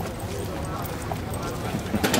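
Outdoor background: people talking at a distance over a steady low rumble, with a few faint clicks.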